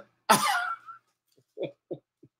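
A man laughing: one loud breathy burst, then a few short, quiet chuckles near the end.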